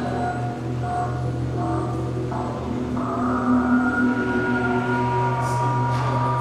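A large ensemble of electric guitars holding sustained, overlapping drone tones; the pitches shift and restack, and a new, louder layer of tones comes in about three seconds in, over a steady low drone.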